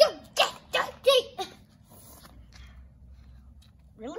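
A child speaking briefly, then only a faint, steady low background rumble.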